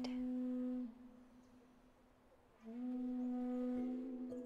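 Sustained crystal singing bowl tones: a steady low tone with overtones that dies away about a second in, then swells back in and holds, with further bowl tones joining near the end.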